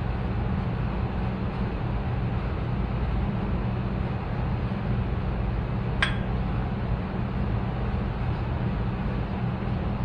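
A steady low machine hum, with a single sharp click about six seconds in.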